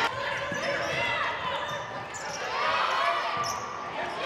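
Basketball dribbled on a hardwood court, with voices in the gym.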